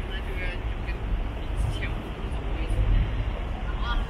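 Busy city street ambience: snatches of passers-by talking over a steady low rumble of road traffic.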